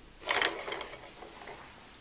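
Hand-spun saw-blade magnet rotor of a home-built axial flux alternator turning on its threaded-rod shaft, which has no proper bearings: a sudden rattling whir about a quarter second in that fades out over about a second.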